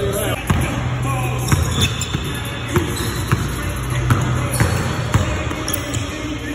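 A basketball bouncing on a hardwood court floor, about six sharp bounces at uneven spacing, over background music with a steady bass line.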